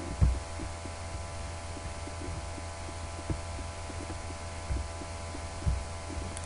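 Steady low electrical hum with faint steady whining tones above it, broken by a few dull low thumps, the loudest just after the start.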